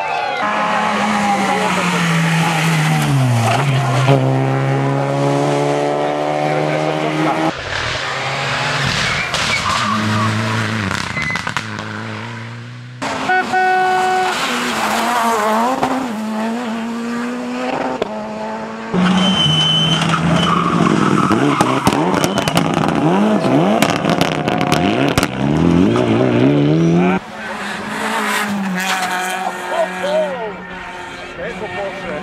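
Rally cars driven hard on a special stage in a run of short clips: engines revving high through gear changes, rising and falling in pitch as each car passes, with tyres scrabbling on loose gravel. The sound changes abruptly several times as one car gives way to the next.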